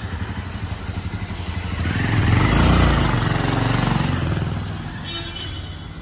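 A motorcycle riding past: its engine note rises to a peak about halfway through, then fades away.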